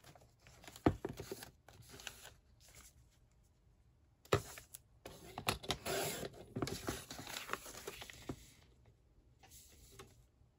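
Paper being handled and set on a Fiskars sliding paper trimmer, a sharp click about four seconds in, then a few seconds of scraping as the cutting slider is drawn along the rail, slicing the sheet.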